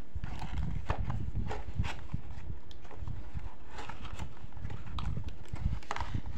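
Hands handling a cardboard doll box with a clear plastic window: irregular light taps and clicks against the box over a low rumble of handling noise.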